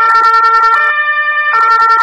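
Ambulance two-tone siren, switching between a low and a high pitch about every three-quarters of a second.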